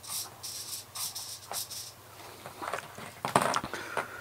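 Two small hobby servos whirring in a string of short bursts as their gears turn back and forth under a servo tester's knob. A few light handling knocks near the end.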